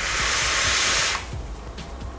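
Steady airy hiss of a draw on a Vandy Vape Kylin M RTA, its mesh coil firing at 40 watts, lasting a little over a second and then cutting off.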